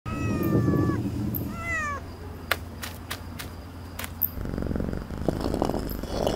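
Cartoon cat vocal effects: a short pitched cat call sliding slightly down over a low rumble, then a second brief call that rises and falls. A run of about six sharp clicks follows, and a low rough rumble comes back near the end.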